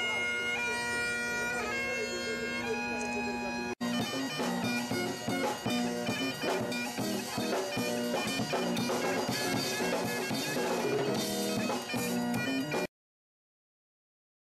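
Bagpipes playing a tune over a steady drone; after a short break about four seconds in, the pipes carry on with a drum kit and electric guitar keeping a beat, as a busking pipe-and-rock band. The music cuts off suddenly about a second before the end.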